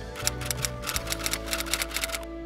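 Typewriter keystroke sound effect: a quick, irregular run of clacks, about seven or eight a second, starting just after the start, over soft background music.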